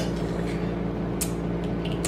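Broth being sipped from the shell of a balut duck egg: a single short sucking click a little over a second in, with a couple of faint ticks near the end, over a steady low hum in the room.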